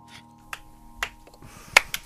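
The last sustained chord of the song dies away about a second in, while a few sharp, scattered claps start up and quicken near the end as the studio applause begins.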